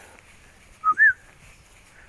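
A person whistles two short notes about a second in, the second higher and rising then falling.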